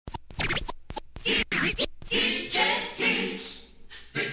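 DJ turntable scratching as the mix opens: short, sharp cuts and back-and-forth pitch sweeps with gaps between them over the first two seconds. These give way to a repeated chopped vocal phrase in the music.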